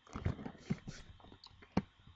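A few sharp computer-mouse clicks, the loudest about three-quarters of the way through, with faint rustling between them.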